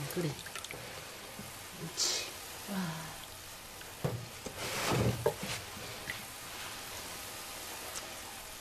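Quiet room tone with a faint steady hiss. It is broken by a short spoken 'wow', a brief breathy sound about halfway through and a couple of small clicks.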